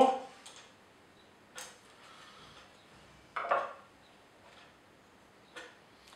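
A few light metallic clicks and taps from a small spanner working the blade-height adjustment in the cutter block of an Elektra Beckum HC260 planer, the loudest about halfway through, with near quiet between.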